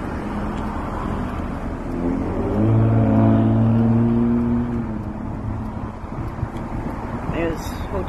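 Road traffic at an intersection: a car drives close past, its engine hum swelling to its loudest about three seconds in and fading by about five seconds. A steady low rumble of traffic runs underneath.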